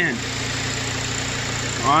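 Car engine idling steadily under the open bonnet, including its alternator. The alternator has a scratching noise that the mechanic takes for a worn bearing, but it is hardly picked up on the recording.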